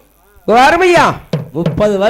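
A male folk singer's voice in Tamil Kaniyan Koothu ballad singing: after a brief pause, one long sung syllable that rises and falls in pitch, then a short sharp knock and the start of the next sung phrase near the end.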